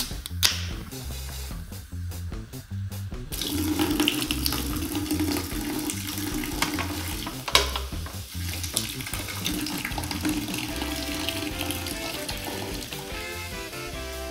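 A drink can's ring-pull snapping open with a sharp click and a short fizz, then the fizzy drink pouring out of the can in a steady stream for about ten seconds, stopping near the end. Background music plays underneath.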